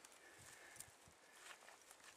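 Near silence with a few faint, soft knocks as a blunt knife works through a dead goat's neck and the carcass is handled.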